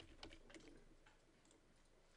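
A few faint computer keyboard clicks in the first half second, then near silence: room tone.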